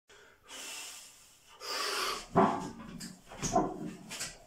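A weightlifter's heavy, forceful breaths, twice, as he braces for a strongman log clean. Then straining grunts of effort, loudest about halfway in and again near the end, as the log is hauled up to the chest.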